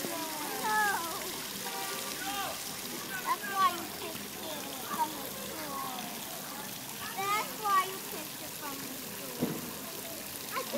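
Splash-pad fountain spraying water steadily in a shallow pool, with scattered children's and adults' voices in the background.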